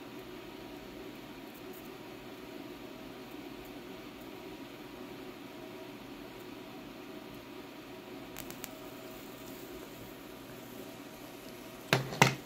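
Steady hiss of a 4.5 MHz solid-state Tesla coil's flame-like plasma discharge burning evenly, with a few faint clicks about eight and a half seconds in.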